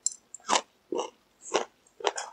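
Close-miked chewing of a mouthful of McDonald's crispy fried chicken: about four wet chews, roughly one every half second.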